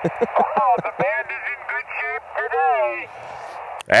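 Another amateur station's voice, laughing and talking, received on 10-meter single sideband through the Yaesu FT-818's speaker, thin and narrow over a steady band of receiver hiss. The hiss and voice cut off just before the end as the operator keys up to reply.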